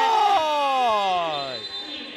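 A broadcast commentator's voice in one long drawn-out call that falls steadily in pitch and fades out near the end.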